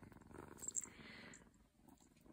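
A black-and-white kitten purring faintly while being held, with a couple of small clicks; the purring fades out about one and a half seconds in.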